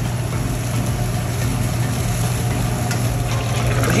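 Steady roar of a high-flame gas wok burner with a constant low hum, as chilli paneer gravy sizzles in the wok.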